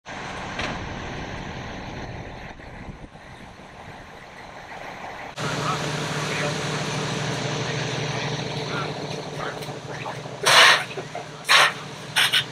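Diesel fire apparatus idling at a fire scene: a steady low engine hum that grows louder about five seconds in. Near the end, three short, loud bursts of noise stand out over the hum.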